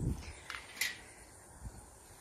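Wire-mesh garden cart being pulled over grass: a low bump at the start, then two short light clicks about half a second and just under a second in, otherwise faint.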